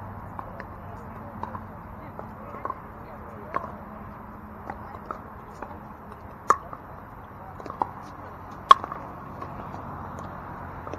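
Pickleball paddles striking a plastic ball during a rally: a string of sharp, short pocks, the loudest two about six and a half and nearly nine seconds in.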